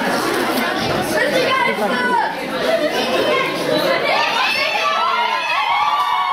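Audience chatter: many voices talking over one another, with no music playing.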